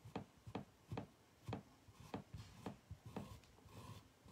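Mini squeegee scraping chalk paste across a silk-screen transfer on a wooden board, a short, faint stroke about every half second.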